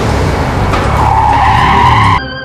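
A speeding vehicle with tyres screeching. A high screech comes in about halfway through and grows louder.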